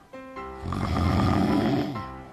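A sleeping person snoring: one long, loud snore starting a little under a second in and lasting about a second, over background music.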